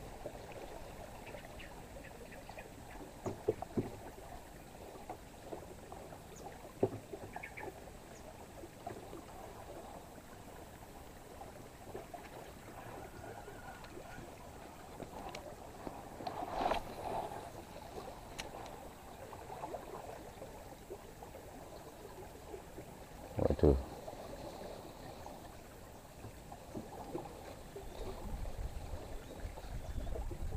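Low, steady rushing of a fast river current around a small boat, with a few scattered knocks, the loudest about two-thirds of the way through, and a low rumble rising near the end.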